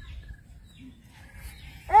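Quiet outdoor ambience: a low wind rumble on the microphone with a few faint bird chirps. A voice cuts in right at the end.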